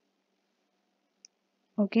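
Near silence with a single short, faint click about a second and a quarter in, then a spoken "okay" at the end.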